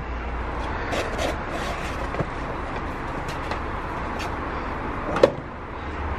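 Steady outdoor background noise with light handling sounds from a cardboard kit box and its paper insert, a few faint clicks, and one sharper knock about five seconds in.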